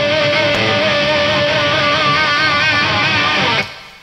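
Fender Stratocaster electric guitar playing overdriven lead notes, held long and bent with a wide vibrato. The phrase ends about three and a half seconds in and fades out.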